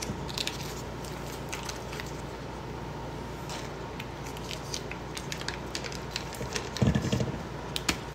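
Paper butter wrappers crinkling and rustling in short, scattered crackles as sticks of butter are unwrapped, with a dull thump near the end as butter drops into a stainless steel mixing bowl.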